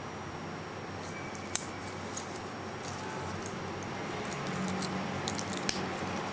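Handling noise from a steel watch being turned over in gloved fingers: the metal bracelet links click and the gloves rub over a steady hiss. A sharp click comes about a second and a half in, and a run of clicks near the end as the watch is flipped to its dial.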